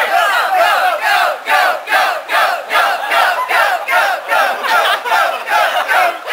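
A crowd of voices chanting and yelling together in a steady rhythm, about two and a half beats a second.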